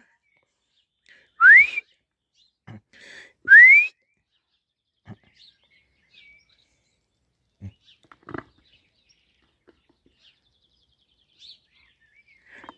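A person whistling twice to call a pet: two short whistles, each sliding upward in pitch, about two seconds apart. A few faint small knocks follow.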